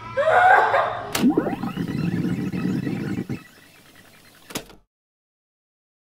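Excited squeals and exclamations from a family group, with a sharp click about a second in. The voices die away after about three seconds, there is another click, and the sound cuts out to silence.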